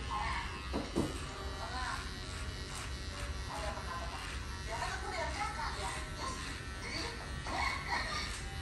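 Cordless electric hair clipper buzzing steadily as it trims a man's beard and mustache close to the lips.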